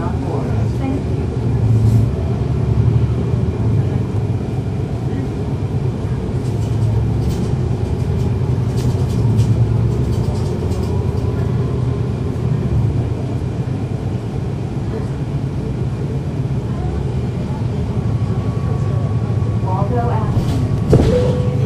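Cummins ISL9 inline-six diesel of a NABI 416.15 transit bus, heard from inside the cabin, running with a steady low drone as the bus drives.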